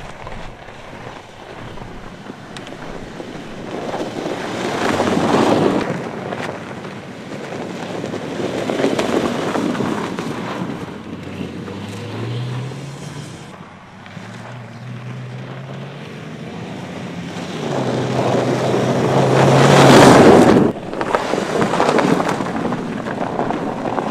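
Mercedes-Benz GLS SUV driving by on a snow-covered road: several swells of tyre and engine noise as it passes, the loudest about three-quarters through, ending abruptly. A low engine hum comes in after the middle and climbs a little in pitch as the SUV pulls away.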